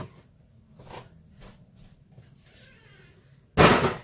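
Faint clicks and handling noises, then a single short, loud bang near the end as kitchen things are put away.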